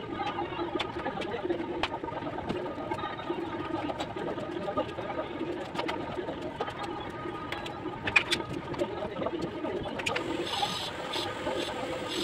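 Bricklayer's steel trowel clinking and tapping on bricks and mortar, with sharp scattered clicks and a louder cluster about eight seconds in, then a rougher scraping near the end. Under it runs a steady low murmur.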